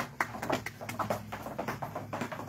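Irregular sharp taps and claps: a few people clapping by hand, mixed with shoe heels striking a wooden floor.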